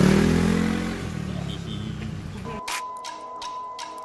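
Street noise with a motor vehicle passing, its engine pitch falling, then at about two and a half seconds in an abrupt change to background music: a held note over evenly spaced beats.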